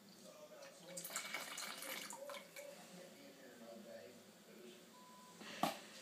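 A small amount of liquid poured from a small glass into a plastic tub of cabbage juice: a faint splashing trickle lasting about a second, followed by a single knock near the end.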